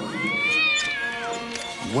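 A cat's drawn-out meow, one call of about a second that rises in pitch and then falls away, over quiet background music.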